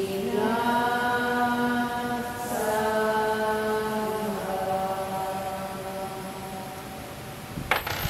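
A group of voices chanting in long held notes, moving to a new pitch twice in the first few seconds and fading toward the end. A sharp click near the end.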